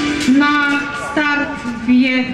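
Announcer speaking over loudspeakers with background music playing underneath.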